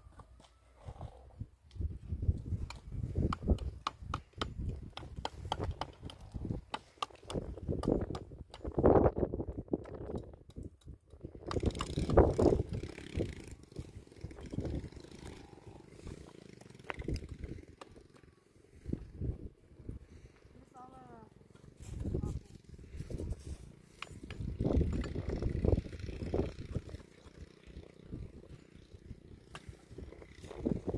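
Concrete blocks and mortar being worked by hand on a block wall: irregular scraping and knocking, with louder spells of handling scattered through, and some low talk.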